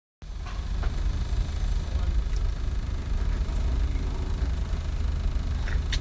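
Steady low rumble of a car's cabin, with a couple of light clicks near the end.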